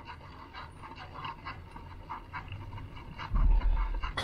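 A cyclist panting in quick, short breaths while pedalling up a hill. Near the end a loud low rumble of wind buffets the microphone.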